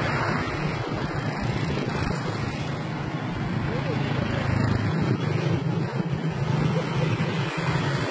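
Steady street traffic noise from motorbikes on the road, mixed with indistinct voices.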